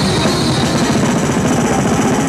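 Thrash metal song with fast, steady drumming, played along on an electronic drum kit.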